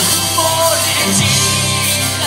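Live rock band playing loudly, with electric guitars, bass guitar and drums.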